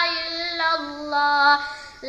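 A boy singing an Urdu naat solo, holding long steady notes; his voice fades away near the end, just before the next line begins.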